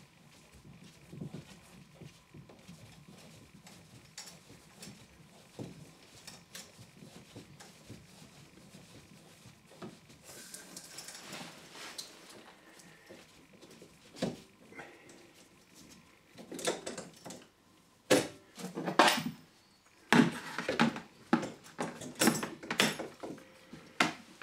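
A pipe slice being turned round a 15 mm copper water pipe, with faint repeated scraping and light clicks as it cuts. In the last third come louder, sharp knocks and rattles of metal and plastic push-fit fittings against the cut pipe.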